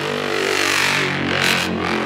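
Dubstep breakdown: one held low synth bass note under a hissing noise sweep that swells and then recedes, with no drums.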